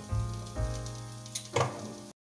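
Meatballs and sauce sizzling in a pan on the stove, over a steady hum, with a single knock about one and a half seconds in.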